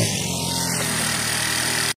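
Small moped engine running steadily as the scooter rolls in and stops. The sound cuts off abruptly near the end.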